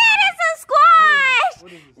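Speech only: voices exclaiming, with one long drawn-out cry around the middle.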